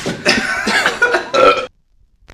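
A man's loud, drawn-out burp that cuts off suddenly near the end.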